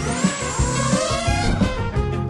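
Background music with a steady beat. Over it, a rising whine through about the first second and a half as a small quadcopter drone's motors spin up for takeoff.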